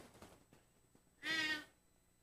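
Dry-erase marker squeaking on a whiteboard while writing: one short, high squeal a little over a second in.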